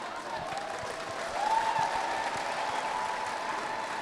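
A congregation applauding, with a long held tone over the clapping starting about a second in.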